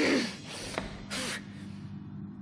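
A woman's short voiced gasp with a falling pitch, then a brief sharp breathy huff about a second later.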